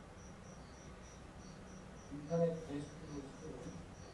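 Crickets chirping in short, evenly spaced high pulses, about three a second, from the documentary's soundtrack as heard through the lecture hall's speakers. About halfway through, a louder low, voice-like pitched sound joins in.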